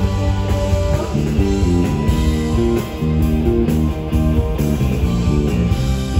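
Live progressive rock band playing, with a quick run of short notes from about a second in over bass and drums.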